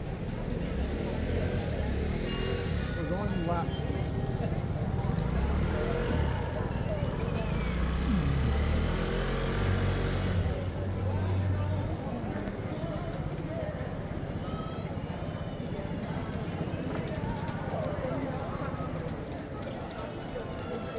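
Street crowd ambience: passers-by talking in the background over a continuous murmur, with a low rumble that is strongest through the first half and eases off about twelve seconds in.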